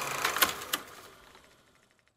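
Indoor sports-hall background noise with a low hum and a few sharp clicks, fading out to silence about a second and a half in.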